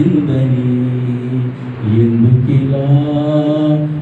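A man singing a Telugu devotional song into a microphone, in two long held phrases with a brief break about two seconds in.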